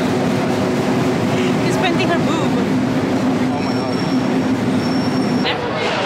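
Subway train running, a steady rumble and hum, with a thin high whine joining in the second half. The rumble drops off suddenly just before the end.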